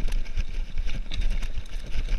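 Cannondale Trail 7 hardtail mountain bike rolling over a loose, stony dirt trail: tyres crunching on gravel, with frequent low thumps and quick clicks and rattles from the bike jolting over the stones.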